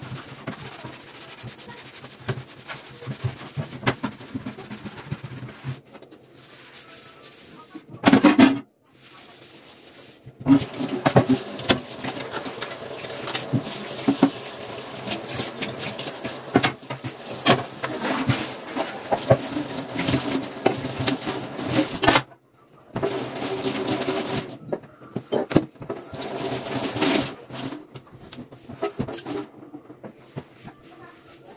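Washing up at a stainless steel kitchen sink: tap water running while a pan is rinsed and scrubbed, with scattered knocks and clatter against the sink. The sound breaks off abruptly a few times.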